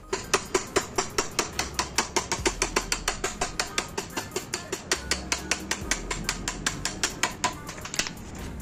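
Ratchet wrench clicking in a fast, even run, about five clicks a second, as it spins the scooter's front axle nut loose; the clicking stops near the end.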